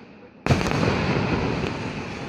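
Aerial fireworks: one sharp, loud shell burst about half a second in, after the tail of earlier bursts has faded, followed by a dense rumble of further bursts and crackle that slowly dies away.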